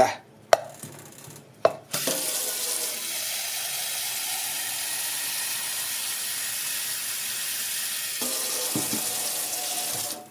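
A few light knocks, then a kitchen mixer tap turned on about two seconds in, water running steadily into a plastic measuring jug held over a stainless steel sink.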